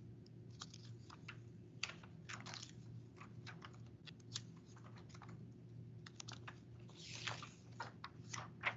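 Faint, irregular computer keyboard typing clicks over a steady low electrical hum.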